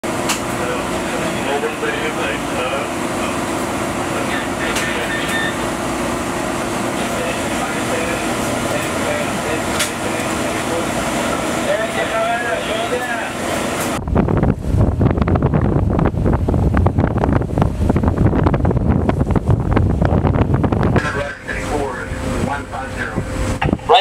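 Steady hum of ship's ventilation and machinery in a warship's bridge, with faint voices in the background. About fourteen seconds in it cuts to a loud, gusty rumble of wind on the microphone out on deck, with voices again near the end.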